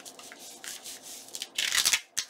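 Paper and tulle netting rustling and crinkling under hands as a glued paper envelope is smoothed flat and then picked up, the rustle loudest near the end.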